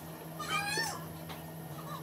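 A cat meows once, about half a second in: a single call that rises and then falls, over a steady low hum.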